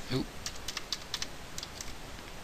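Computer keyboard keystrokes, a quick irregular run of about ten clicks over a second and a half. A brief voice sound comes just at the start.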